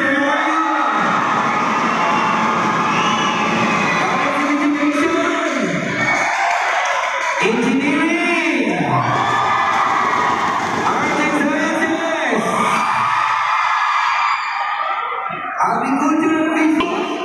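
A large crowd of spectators shouting and cheering, with many voices calling out at once, some close by.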